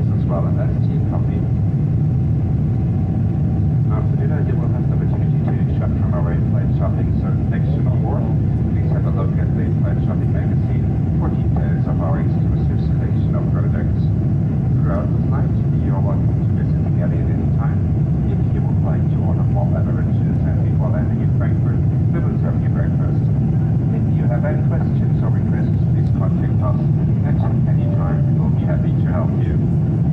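Steady cabin noise of a Boeing 747 in its climb, a constant low rumble of engines and airflow heard from a window seat inside the cabin.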